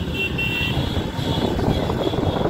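Motorcycle engine running while riding along a street, with steady road and wind noise on the microphone.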